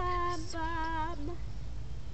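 A girl's voice singing one held note with a wavering vibrato for a little over a second, then stopping.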